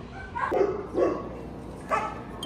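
A dog barking: three short barks in about two seconds.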